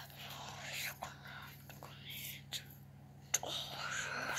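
A person whispering in short breathy phrases, over a faint steady hum.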